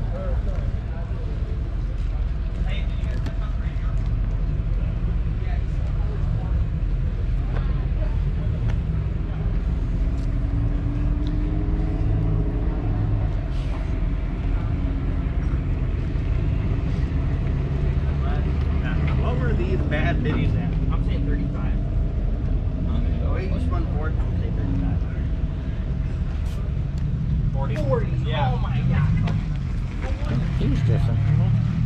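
Motorsport paddock ambience: a steady low rumble with a car engine audibly rising in pitch for a few seconds from about ten seconds in. Scraps of voices come through twice near the middle and end.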